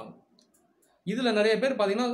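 A man talking, with a pause of under a second near the start that holds only a few faint clicks; speech picks up again about a second in.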